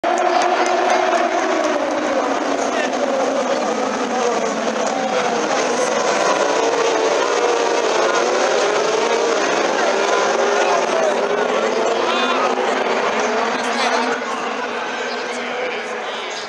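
A pack of open-wheel race car engines running hard at a race start, many engine notes overlapping and rising and falling as the cars go past.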